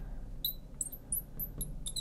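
Marker writing on a glass lightboard: a string of short, high squeaks as each stroke is drawn across the glass.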